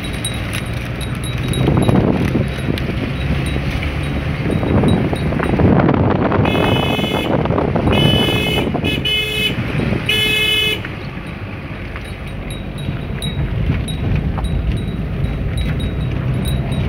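Car horn honking five times over about four seconds, midway through: two blasts of nearly a second, two quick taps, then another long blast. Under it runs the steady engine and road noise of the moving car.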